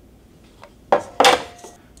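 Handling noise of a sword and its lacquered scabbard: a short scrape and knock about a second in, with a faint brief ring after it.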